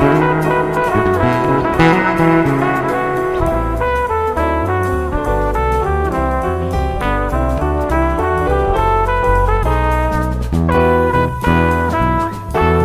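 Jazz instrumental with a horn-like lead melody of distinct notes over a fretless electric bass guitar played live; a low, stepping bass line comes in about three and a half seconds in.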